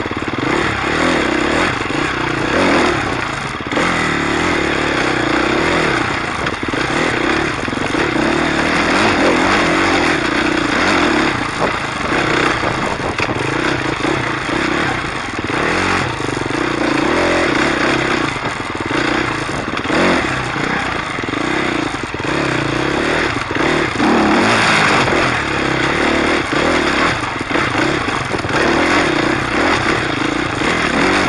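Dirt bike engine running while riding a rough trail, the engine note repeatedly rising and falling as the throttle opens and closes, with frequent clattering knocks from the bike over bumps.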